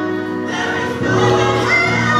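A woman singing a gospel song into a handheld microphone, holding long notes, her pitch sliding upward near the end.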